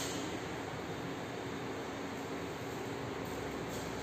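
Steady background noise with no speech: an even hiss and low hum of classroom room tone.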